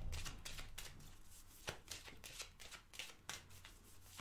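A deck of oracle cards shuffled by hand, giving a quick, uneven run of soft, faint card clicks and slaps.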